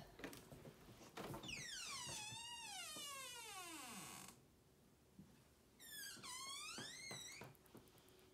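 Closet door hinge squeaking as the door swings open: a long squeak that falls in pitch and stops abruptly, then a second, shorter falling squeak a couple of seconds later.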